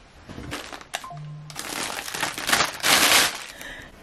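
Paper shopping bag and tissue paper rustling and crinkling as a handbag is pulled out. A few sharp clicks come first, then the rustling builds to its loudest in the second half.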